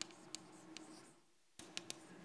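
Chalk writing on a blackboard: faint scattered taps and scratches over a low room hum, cutting out briefly to silence a little after a second in.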